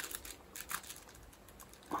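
Faint rustling and a few light clicks of stiff ivy weaver and spokes being worked by hand and pulled tight while stitching a basket border, mostly in the first second.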